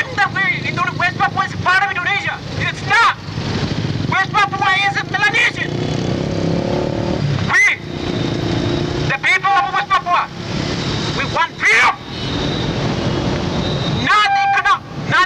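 A man's voice shouting through a handheld megaphone in short phrases with brief pauses, over steady street traffic noise that includes motorcycles.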